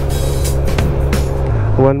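Motorcycle engine running steadily at riding speed, with wind and road noise rushing over the microphone. The sound changes abruptly about one and a half seconds in, and a man's voice starts near the end.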